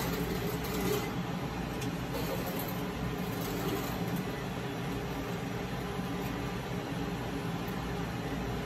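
Steady low mechanical hum of a Kellenberger universal cylindrical grinder standing powered up at idle.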